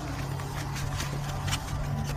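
Scissors cutting through a paper-pulp egg tray: a few irregular crunching snips, over a steady low hum.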